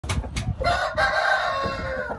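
A rooster crowing: one long call that swells about a second in and trails off downward at the end, after two short knocks at the start.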